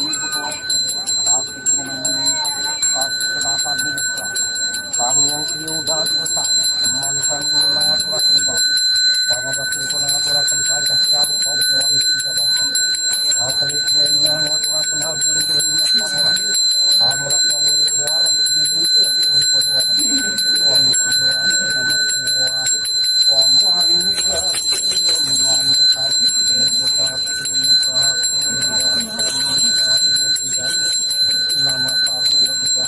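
A Balinese priest's hand bell (genta) rung without pause, giving a steady high ringing, with voices under it.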